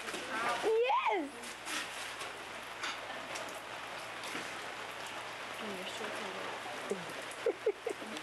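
Steady rain falling and splashing on a paved patio, with a haze of many small drops and drips. A high-pitched voice sounds briefly about half a second to a second in, and short vocal sounds return near the end.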